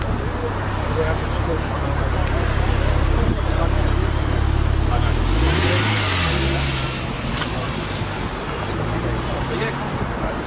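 Car engine idling with a low steady hum, then a single quick rev that rises and falls about halfway through.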